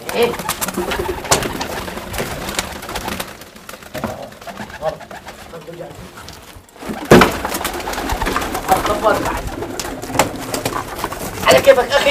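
Domestic pigeons cooing, with a sudden louder burst of noise about seven seconds in.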